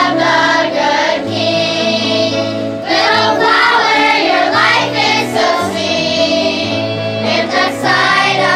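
A choir of children singing a song together, with steady instrumental accompaniment holding low notes underneath.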